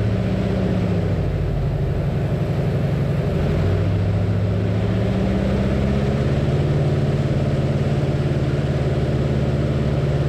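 Waco YMF-5 biplane's Jacobs R-755 seven-cylinder radial engine running hard on the takeoff roll. Its pitch dips briefly about a second in, then climbs and holds higher as the plane gathers speed.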